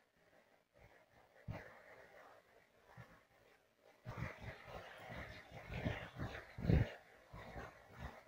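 Near silence with a single faint click, then, about four seconds in, faint irregular scraping and clinking of a metal spoon stirring tempering (oil, spices, chillies and curry leaves) in a small steel pan.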